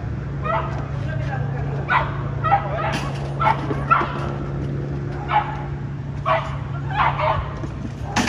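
A frightened puppy giving about a dozen short, high yelps and whimpers at irregular intervals, over a steady low hum.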